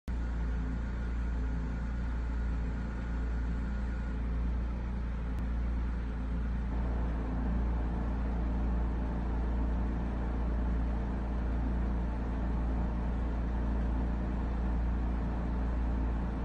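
Steady low rumble with a faint hum, unbroken throughout, and a faint high tone in the first few seconds.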